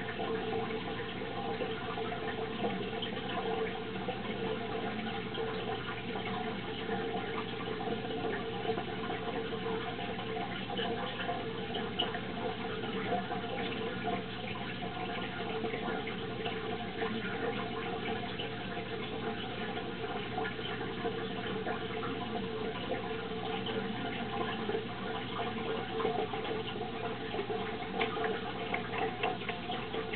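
Water trickling and splashing steadily in a turtle tank, with a faint steady hum beneath it.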